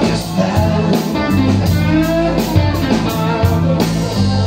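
Live band playing a slow blues: an electric guitar lead with bent, wavering notes over bass guitar, drums and keyboard.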